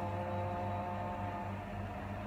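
A person humming one held, level note that stops about a second and a half in, over a steady low hum.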